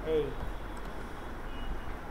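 A short spoken syllable falling in pitch at the start, then a steady low hum and hiss of the microphone's background, with a faint brief high tone about one and a half seconds in.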